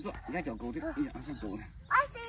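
A young child's high-pitched wordless vocalizing and whining, the effortful sounds of hanging from a bar, ending in a sudden loud sound near the end.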